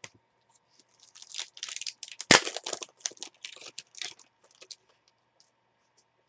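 A trading-card pack's foil wrapper being torn open and crinkled in the hands, with one sharp, loud rip a little over two seconds in.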